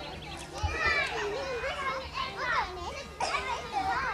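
Young children's voices shouting and chattering as they play, several high voices overlapping.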